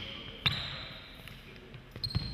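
Basketball dribbled on a hardwood gym floor: one bounce right at the start and a louder one about half a second in, each with a short echo in the large hall.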